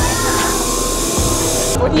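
Large fog machine blasting out a burst of fog: a steady hiss that cuts off suddenly shortly before the end.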